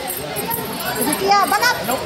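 Crowd of children's voices chattering together, with one child's high-pitched call rising above them about one and a half seconds in.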